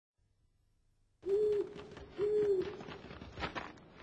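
An owl hooting twice, two short even hoots about a second apart, followed by a few faint knocks.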